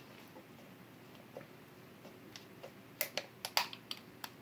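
Faint handling sounds of a freshly opened glass beer bottle: a couple of small ticks, then a quick run of sharp clicks and taps near the end.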